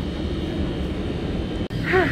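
Steady low rumble of distant engine noise, with a brief sharp dropout near the end.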